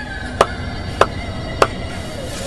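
Three sharp percussive knocks, evenly spaced a little over half a second apart, over a low rumbling drone in a soundtrack that accompanies incantations.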